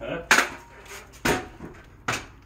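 Two sharp metallic knocks about a second apart, each ringing briefly.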